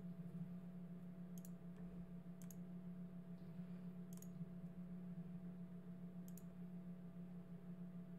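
Four faint, sharp clicks from a computer being operated, spaced a second or two apart, over a steady low hum.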